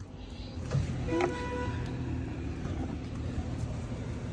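Road traffic on a rain-wet street heard through a closed window: a low engine rumble that swells about a second in, with a short pitched toot just after.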